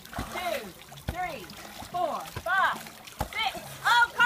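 Children and a woman calling out in short rising-and-falling cries while water splashes in a swimming pool.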